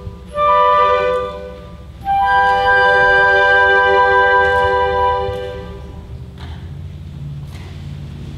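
Choir and orchestra sounding two held chords of classical music, the second longer one dying away about five and a half seconds in. After it comes a low, steady hall hum.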